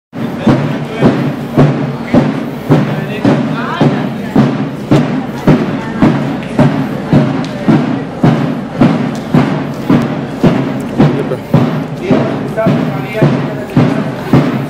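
Procession music with a bass drum struck steadily about twice a second and a sustained melody over it.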